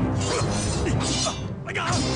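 Film fight soundtrack: blades clash with sharp metallic hits and ringing over orchestral score music, with fighters' grunts and shouts.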